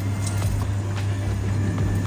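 A spatula stirring soup in a clay pot, with a few light clicks about a second apart, over a steady low hum.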